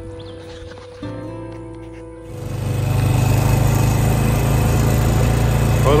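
Held musical tones for about two seconds, then the steady running of a small vehicle engine towing a loaded trap trailer comes in loud and holds an even pitch and level.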